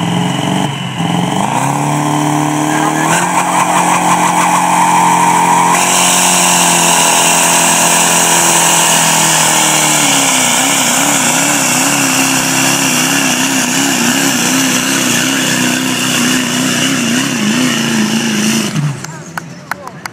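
Chevrolet diesel pickup at full throttle pulling a sled in a truck pull. The engine revs up at the launch and runs loud, its pitch wavering up and down through the second half of the pull, then cuts off abruptly near the end as the pull ends.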